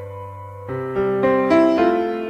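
Slow keyboard music in a piano sound. A held chord fades, then a new chord comes in about two-thirds of a second in, with further notes added one after another.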